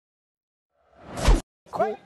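Edited intro whoosh sound effect that swells for about half a second into a deep boom and cuts off sharply.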